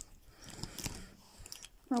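Faint clicks and rustling from a plastic robot action figure being handled, its waist swivel and leg joints moved.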